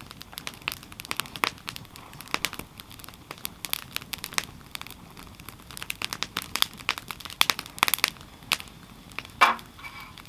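Split firewood crackling in a portable steel fire pit: irregular sharp snaps and ticks, with one louder pop near the end.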